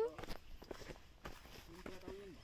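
Footsteps of several people walking on a rocky dirt trail: a quick, irregular run of separate scuffing steps on grit and stone.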